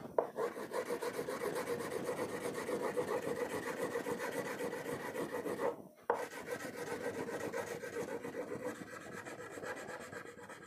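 Red crayon rubbed back and forth on a paper sheet pinned to a whiteboard, colouring in with quick, even, scratchy strokes that pause briefly about six seconds in.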